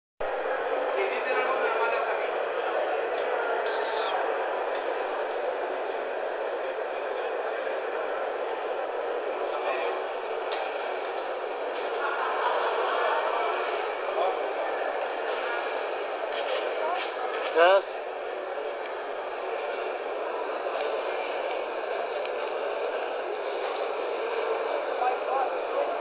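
Indistinct crowd chatter, steady throughout, with one brief louder voice about seventeen seconds in.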